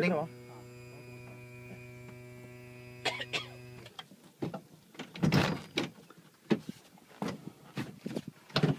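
A steady electric hum at one pitch, with overtones, which stops abruptly about four seconds in. Scattered short knocks and brief voices follow.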